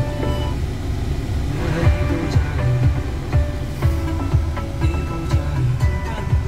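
Music from the SsangYong Korando's factory FM radio playing through the car's speakers, over a steady low rumble of the vehicle in the cabin.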